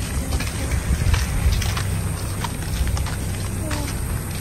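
Footsteps and scattered light knocks of people walking, over a steady low rumble of wind and handling noise on a handheld phone's microphone.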